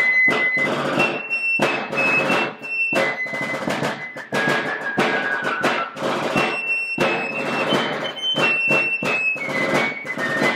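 Wooden fife and rope-tension field drum playing a Revolutionary War camp duty call together: a shrill, high fife melody of held notes stepping up and down, over a steady rattle of snare drum strokes.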